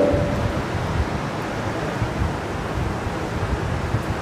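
Steady, even hiss-like background noise with no distinct events, as the tail of a man's voice dies away in the first half second.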